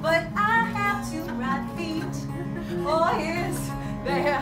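Acoustic guitar playing sustained low notes, with a woman's voice in short sung phrases near the start and again about three seconds in.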